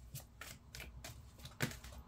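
A deck of oracle cards being hand-shuffled: a quick run of light card slaps and flicks, about four or five a second, the loudest about one and a half seconds in.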